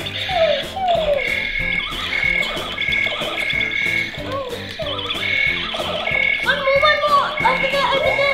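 Electronic sound effects from a Buzz Lightyear toy: a run of short falling laser zaps in the first few seconds and a high beep repeating about once or twice a second, over background music.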